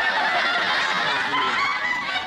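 Studio audience laughing loudly, a dense crowd of overlapping laughs.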